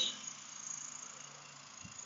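Faint outdoor background of insects chirping steadily.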